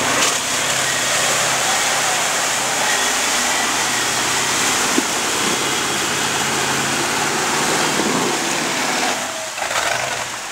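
Chevrolet pickup's engine running steadily as the truck drives slowly past through mud, with a broad rush of tyre and wind noise over it; the low engine sound drops away about nine seconds in.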